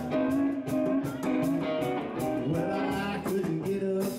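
Live country band playing an instrumental passage: electric guitar, pedal steel guitar and upright bass over a steady beat, with sliding steel-guitar notes.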